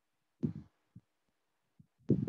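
Muffled low thuds over a video-call audio line: a dull thud about half a second in, two faint knocks, then another thud just at the end.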